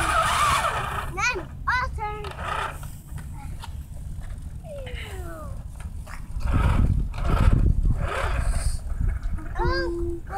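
Children's high voices calling out in several short rising and falling calls, over a low rumble that swells about six and a half seconds in.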